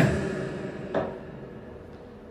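A man's voice fading away through PA speakers after he stops speaking into the microphone: the reverb and echo tail added by the mixer's effects, dying out over about two seconds with one faint short repeat about a second in.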